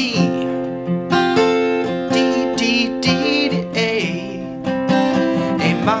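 Steel-string acoustic guitar with a capo at the third fret, strummed with a pick through a chord progression that starts on an E minor shape. A new strum comes about once a second, and the chords ring on between strums.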